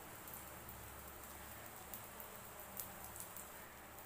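Maggi noodle omelette frying in oil on a flat griddle pan: a faint, steady sizzle with a few small ticks and pops.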